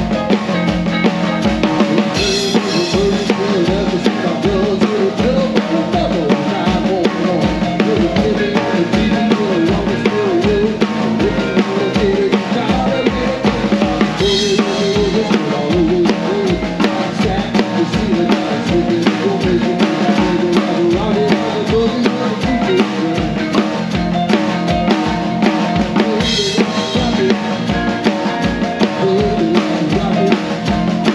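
Ludwig Classic Maple drum kit with Paiste cymbals played live with a band in a rock shuffle: a steady kick and snare beat under the rest of the band, with a cymbal crash about every twelve seconds.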